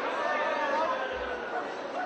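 Indistinct chatter and voices of a crowd.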